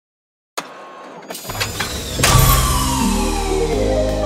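Electronic DJ-mix intro: after about half a second of silence a hit and a few clicks, deep bass coming in at about one and a half seconds, then a loud crash at about two seconds followed by a long falling sweep over a stepping bass line.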